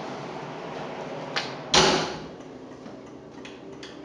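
Oven door shut with a loud thump a little under two seconds in, just after a sharp click. A few faint clicks follow near the end.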